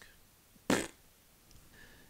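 A single short breathy sound from the man's mouth or nose, lasting well under a quarter of a second, about three-quarters of a second in; otherwise quiet room tone.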